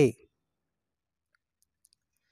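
The narrator's voice ends a phrase at the very start, then near silence follows, with a faint click or two near the end.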